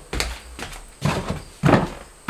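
Four or five irregular knocks and thumps from tools and mounting hardware being handled against a wall.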